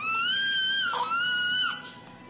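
Two long, high-pitched wailing cries, each held at a nearly steady pitch, the second starting about a second in after a brief break.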